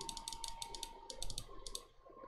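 Computer mouse clicked rapidly over and over, a quick run of light, sharp clicks with a short pause about a second in.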